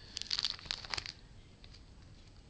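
Plastic binder sleeve pages crinkling and crackling as a trading-card page is handled and turned, a short flurry of crackles lasting about a second.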